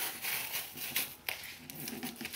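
Thin paperboard box being handled and pressed flat by hand: faint rustling of card against the table, with a couple of light clicks about a second in.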